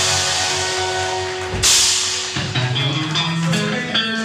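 Live rock band playing with drum kit, electric guitars, bass and keyboards. A loud crash about a second and a half in, after which a new figure of moving bass and guitar notes starts.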